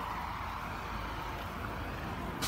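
Steady low rumble and hiss of background noise, with no distinct events.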